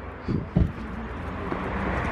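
Low rumble of wind on a handheld phone microphone outdoors, with a couple of soft low thumps about half a second in.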